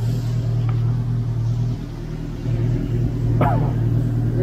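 Motorcycle engine idling with a steady low hum, which dips briefly about two seconds in and then picks up again. A short shout cuts in near the end.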